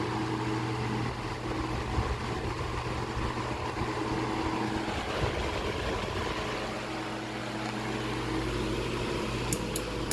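Diehl G12AJ16 12-inch desk fan running on high: a steady electric-motor hum under the rush of air from the blades. Near the end come a few sharp clicks as a hand works the push knob on the motor.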